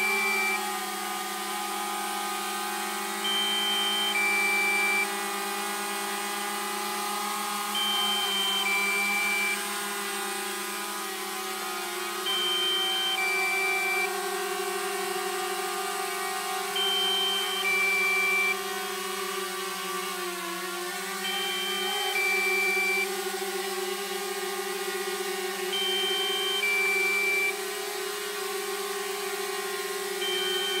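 DJI Mavic Mini's propellers buzzing steadily as it hovers and moves, the pitch dipping briefly about twenty seconds in. Over it, a two-note warning beep, a high note then a lower one, repeats about every four and a half seconds: the low-battery warning.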